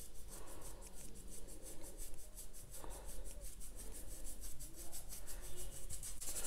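Paintbrush bristles rubbing and scrubbing over watercolour paper, a faint, irregular brushing sound.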